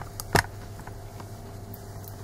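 A single sharp knock about a third of a second in, as of a hard object set down on the craft table, over a low steady hum.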